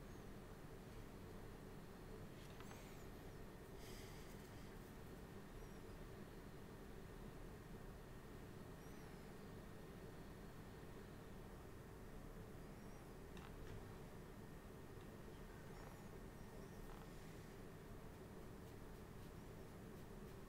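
Near silence: steady low room tone, with a few faint, brief scratches or taps scattered through it.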